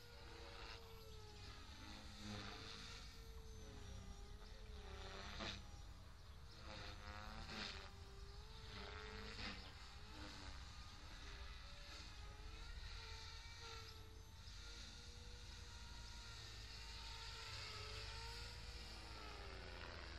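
Radio-controlled model airplane's motor whining faintly overhead, its pitch wavering up and down as the plane manoeuvres and passes, over a low rumble of wind on the microphone.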